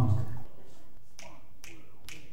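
Fingers snapping in an even beat, a little over two snaps a second, counting off the tempo just before the jazz band comes in.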